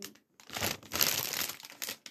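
Clear plastic bouquet wrapping crinkling and rustling as a bouquet of flowers is handled and lifted.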